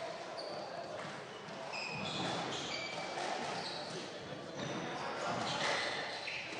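Squash ball hits in a large hall: sharp cracks of racket on ball and ball on the court walls, with many short high squeaks of court shoes on the wooden floor. People are talking indistinctly in the background.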